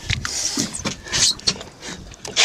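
Irregular short splashes of water and knocks against the boat's hull as a hooked tarpon is held by the jaw alongside the boat.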